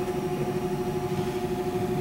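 Steady machine hum of the room, with two faint steady tones and no other events.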